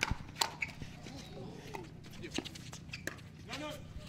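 Pickleball paddles hitting the plastic ball during a rally: a run of sharp pops, each a second or less apart.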